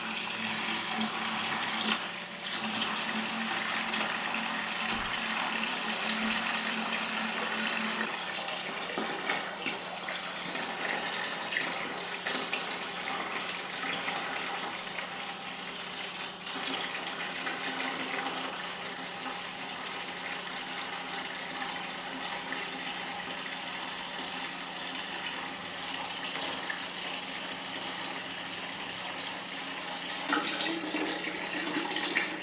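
Aquarium water siphoned through a thin tube, pouring in a steady stream into a plastic bucket as it fills. A steady low hum runs underneath.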